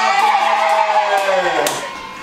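A person's long drawn-out vocal cry, held at one pitch and then sliding down near the end, with a second, lower voice held beneath it.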